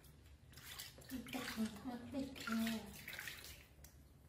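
Water splashing and sloshing in a plastic basin as hands wash a baby monkey, with a woman's voice through the middle, loudest near the middle.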